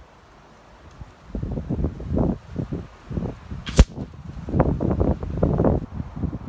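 Gusty wind buffeting the microphone in low rumbling bursts, with a single sharp crack of a shot from a .30-calibre PCP air rifle about two thirds of the way through.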